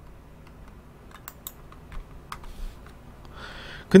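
A few faint, scattered clicks at a computer's keyboard and mouse while a spreadsheet is scrolled and a cell selected, over a low, steady background.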